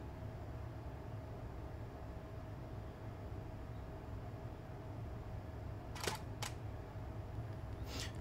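DSLR shutter firing in live view near the end: two short, sharp clicks about half a second apart, over faint room tone with a steady hum.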